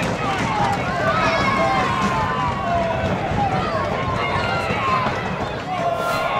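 Many voices shouting and cheering at once: a small football crowd and players celebrating a goal.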